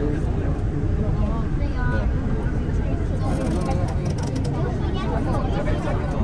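Sentosa Express monorail running, heard from inside the carriage as a steady low rumble, with people's voices over it.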